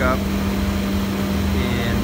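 Steady mechanical hum: a constant low drone with one even tone, unchanging throughout.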